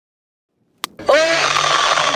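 Silence, then a sharp click, then, about a second in, a loud, harsh cartoon-style scream from a male voice actor playing Plankton; its pitch drops at first and then holds steady, with a rough, noisy edge.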